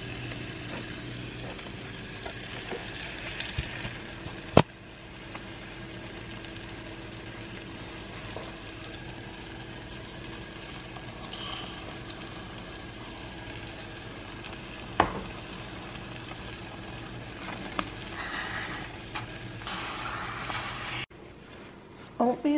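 Oatmeal and stewed apples cooking in pans on a gas stove: a steady sizzle and simmer with stirring, broken by a sharp knock about four and a half seconds in and a smaller one near fifteen seconds.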